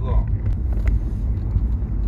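Steady low rumble of background noise in a covert voice recording, with the tail of a man's voice at the very start and a couple of faint clicks.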